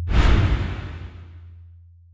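A whoosh sound effect, sudden at the start and fading away over about a second and a half, over a held low bass note from electronic intro music that dies away.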